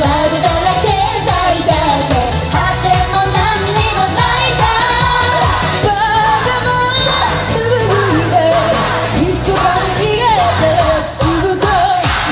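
Live J-pop idol group performance: several female voices singing an upbeat pop song through microphones over loud backing music.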